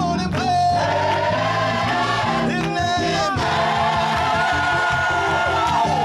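Combined gospel choir singing with instrumental accompaniment underneath.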